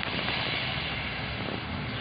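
Steady, even rushing noise with no speech.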